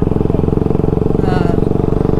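Bajaj Pulsar RS200's single-cylinder engine running at a steady, even pitch while the motorcycle is ridden along at cruising speed.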